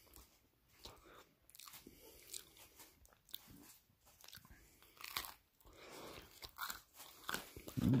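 Close-miked biting and chewing of crispy pizza: irregular crunches and crackles of the crust between the teeth, with a closed-mouth "mm" of enjoyment at the very end.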